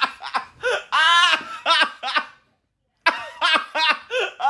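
High-pitched laughter in short repeated ha-ha bursts, with one longer held laugh about a second in. It breaks off abruptly into a moment of silence just past the middle, then starts again.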